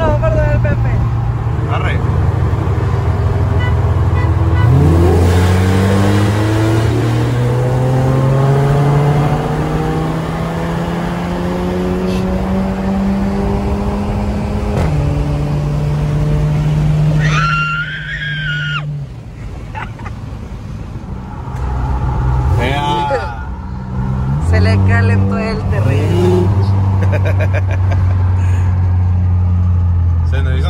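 Volkswagen Golf GTI Mk7's turbocharged four-cylinder heard from inside the cabin, pulling hard with its pitch climbing for about ten seconds, then dropping at a gear change. After a few seconds of lighter running it revs up and pulls again.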